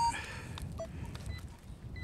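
Two brief electronic beeps from a handheld metal-detecting pinpointer as it is probed through the dug soil, one right at the start and one just under a second in, over a steady low rumble and faint scraping of soil.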